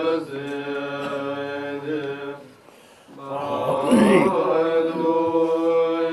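Tibetan Buddhist monks chanting prayers in unison, a low, steady group recitation. It breaks off briefly about halfway through, then resumes.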